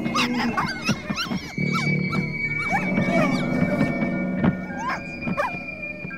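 Animal yelps and whines, short cries that rise and fall, heard in clusters over a film score of held tones, with a high steady note and a low drone. A sharp click sounds once past the middle.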